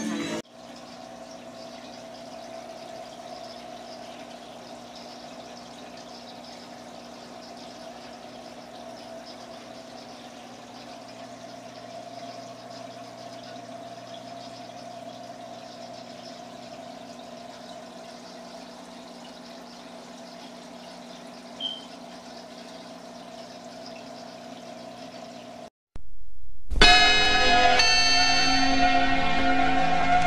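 Steady hum and water trickle from the filters and pumps of several running aquariums, unchanging for about 25 seconds. Near the end it cuts out, and loud outro music begins.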